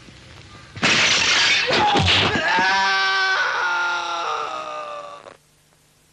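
A loud crash of something breaking about a second in, then a long high yell, held for about three seconds and cut off abruptly, as in a dubbed kung fu film's fight sound effects.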